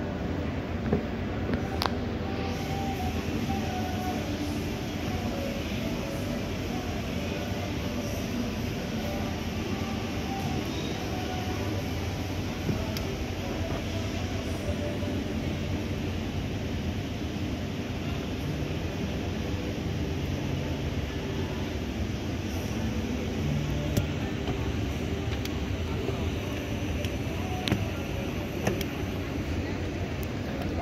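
Schneider SE-60 escalator running: a steady low drone from the drive and the moving steps, with a few faint clicks.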